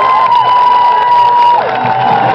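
A football crowd cheering and shouting for a recovered fumble, over one long held note that drops to a lower pitch about one and a half seconds in.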